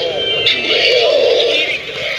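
Animated devil door knocker Halloween prop playing its electronically distorted, sing-song demonic voice, loudest about a second in.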